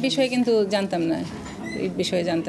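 A person talking: speech that the transcript did not pick up.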